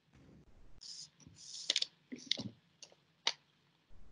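Faint, scattered clicks and short soft noises, several separate ones in the second half, heard over a video call's quiet line.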